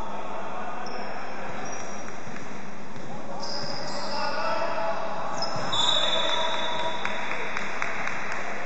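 Basketball bouncing on a hardwood gym floor during play, with short high sneaker squeaks and a few sharp knocks near the end, in an echoing hall.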